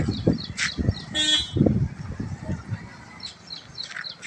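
A short vehicle horn toot about a second in, over low irregular rumbling. A bird chirps quickly and repeatedly near the end.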